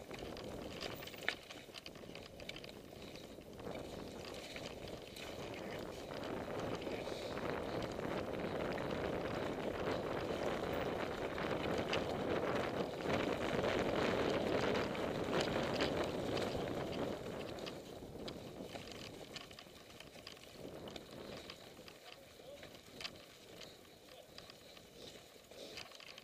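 A mountain bike riding down a muddy, leaf-covered woodland trail, heard from a camera on the bike or rider: rushing tyre and wind noise with scattered knocks and rattles over bumps. It grows louder through the middle as speed builds, then eases off.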